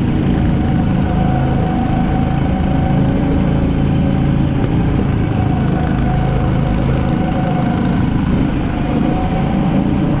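Go-kart's small engine running steadily as the kart drives the track, heard from the kart itself, with a faint tone that wavers slightly in pitch.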